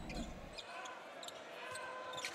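Faint basketball court sound from the game broadcast: a ball bouncing on a hardwood floor as short, scattered knocks over arena background noise.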